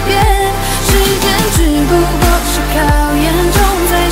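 Mandarin pop song recording playing, with a steady kick-drum beat about every two-thirds of a second under a gliding melody line.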